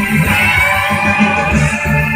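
Loud live band music with electric guitar to the fore.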